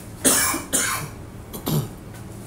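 A man coughing three times in quick succession, each cough quieter than the last.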